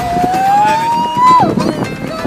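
A single long, high note that climbs slowly in pitch for about a second and a half, then breaks off, over a busy background of music and voices.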